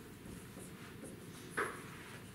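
Marker writing on a whiteboard: faint scratching strokes, with one short, louder stroke about one and a half seconds in.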